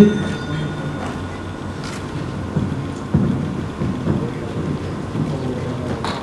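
Low, steady rumble of a large hall with a few faint knocks.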